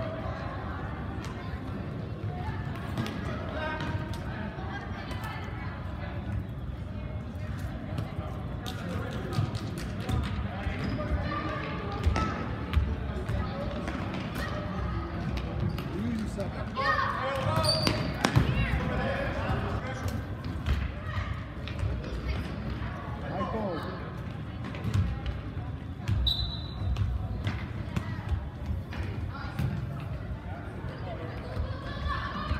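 Indoor futsal game in a gym: a ball kicked and bouncing on the hard floor, echoing, with spectators' chatter and shouts throughout. The voices get louder for a moment a little past the middle.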